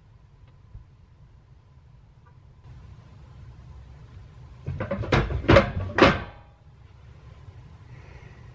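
Shuffling movement, then three loud thumps in quick succession, about half a second apart.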